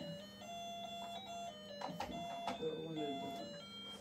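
Electronic tune from a baby walker's toy play panel: a simple run of held single notes stepping up and down in pitch, over a low steady hum.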